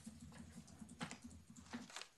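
Typing on a computer keyboard: a run of faint, irregular key clicks over a low steady room hum.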